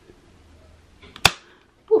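A single sharp knock as the handheld camera strikes something hard, just over a second in, with a few faint clicks just before it.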